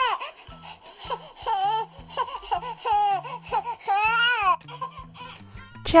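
Infant crying in repeated rising-and-falling wails, over background music with a steady low bass pattern.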